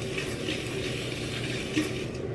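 Aerosol can of Caudalie Grape Water facial mist spraying in one continuous hiss.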